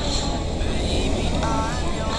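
Road traffic passing close by, motor vehicles on a highway, over a steady low wind rumble on the microphone of a moving bicycle. A short voice-like phrase comes through near the end.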